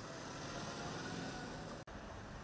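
Faint street traffic: a steady hum of vehicles, broken by a brief gap near the end.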